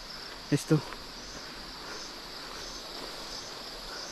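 Steady, high-pitched chorus of insects. Two short voice sounds from a person come about half a second in.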